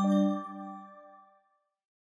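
The closing bell-like chord of an outro music jingle, struck once and ringing out. It fades to silence about a second and a half in.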